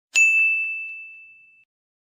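A single bright ding, like a bell chime, struck once and ringing away over about a second and a half: an intro sound effect.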